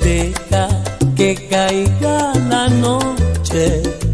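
Salsa erótica music: a passage with no words, carried by a bass line, melodic lines and steady percussion.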